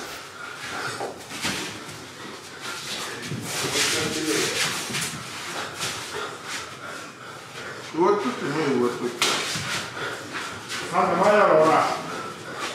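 Sumo wrestlers grappling in a practice bout: bodies slapping and bare feet scuffing and knocking on the clay ring, with men's voices calling out about eight seconds in and again near the end.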